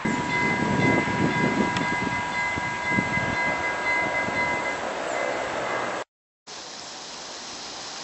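Railway level-crossing warning bell ringing as a steady chime over a rushing background. It cuts off about six seconds in, and after a brief silence a softer, even rushing noise follows.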